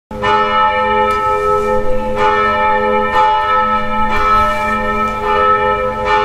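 Bells ringing, a new strike about once a second, each tone ringing on into the next.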